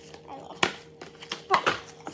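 Clear plastic bag being handled: a few sharp crinkles and clicks, the loudest about halfway through and just before the end, mixed with brief sped-up voice sounds.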